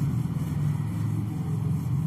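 A steady low mechanical drone, like an engine running at idle.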